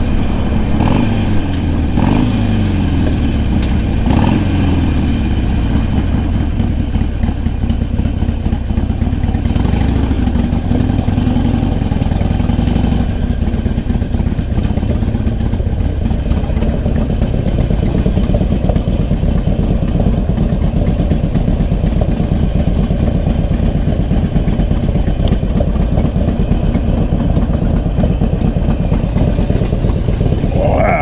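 Motorcycle engine heard from the rider's seat. Its pitch falls over the first few seconds as the bike slows, then it runs at low speed with a steady rumble.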